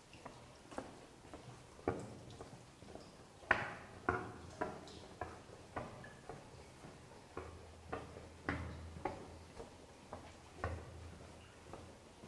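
Footsteps on a paved cave walkway, about two a second, each step echoing off the rock. A faint low hum comes in for a few seconds in the middle.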